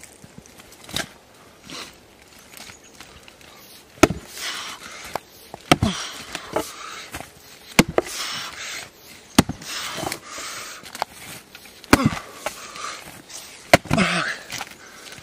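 Axe blows into a large oak round, about six heavy strikes spaced a second and a half to two seconds apart, starting a few seconds in. By the last strikes the round is splitting open.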